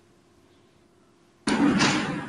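Near silence with a faint steady hum, then about one and a half seconds in a sudden loud rustling noise sets in: handling noise on a press-conference microphone.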